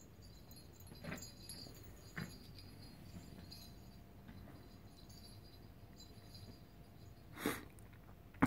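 Faint sounds of a small poodle playing with a soft plush clam-shell toy and moving about on carpet: light jingling from its collar tag and a couple of soft knocks. One short, louder sound comes near the end.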